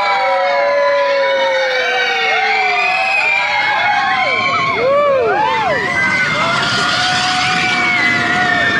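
Roller coaster riders screaming and whooping, many voices overlapping in long rising and falling cries over the rushing noise of the moving train.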